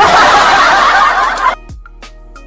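A burst of canned laughter sound effect, loud and wavering, cutting off suddenly about one and a half seconds in.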